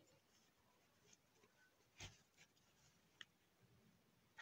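Near silence with faint handling sounds from a crocheted yarn doll being turned and stitched by hand: a few soft ticks and rustles, the loudest a soft knock about two seconds in.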